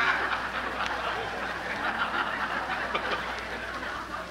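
Studio audience laughing after a punchline, the laughter slowly dying away.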